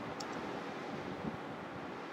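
Faint, steady background hiss: room tone and microphone noise, with one faint click shortly after the start.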